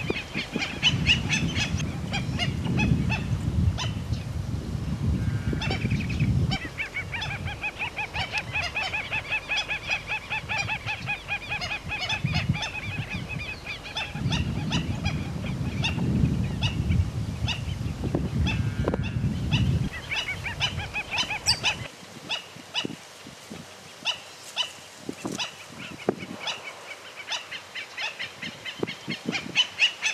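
Black-necked stilt (tero real) giving its sharp, yapping call over and over in rapid runs, thinning out in the last third.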